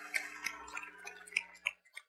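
Faint movement sounds from a congregation: a few light clicks and knocks, with two sharper ticks in the second half, over a low steady hum that stops near the end.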